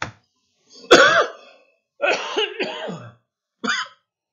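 A person coughing: a loud cough with a sudden onset about a second in, followed by more short coughing and throat-clearing sounds.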